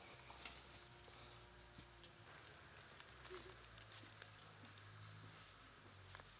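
Near silence: faint outdoor ambience with scattered soft ticks and rustles of footsteps on a leaf-strewn dirt path, and a faint steady hum in the first two seconds.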